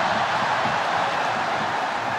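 Football stadium crowd: a steady noise of many voices from the stands.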